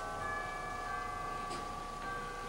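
Soft sustained chord from an opera pit orchestra: several held notes ringing steadily, with a higher note added just after the start.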